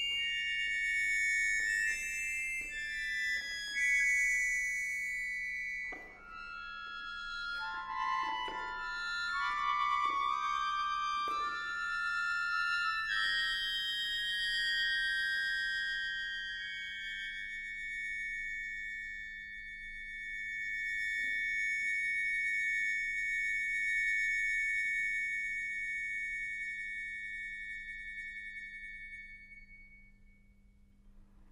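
Solo accordion playing high, sustained, dissonant reed clusters whose pitches shift in overlapping steps. About halfway through they settle into one held chord that slowly fades away near the end.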